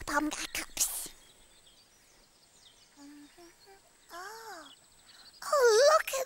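Wordless character voice sounds: a quick vocal sound at the start, a rising-and-falling vocal 'ooh' about four seconds in, and a louder vocal sound near the end. In between there is a quiet lull with a few soft short notes.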